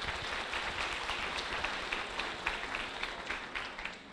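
Audience applauding, a steady patter of many hands clapping that dies away near the end.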